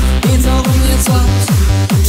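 Instrumental stretch of a hands-up dance remix: a heavy, pitch-dropping kick drum about three beats a second under synth chords, with no vocals.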